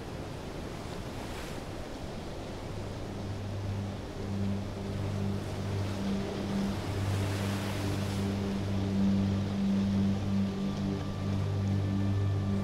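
Airship ambience soundscape: a steady rush of wind, joined about three seconds in by a low humming drone that comes and goes in uneven stretches, the whole growing louder, with a stronger gust of rushing air near the middle.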